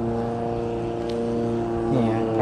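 An engine running steadily at an even pitch, with no revving.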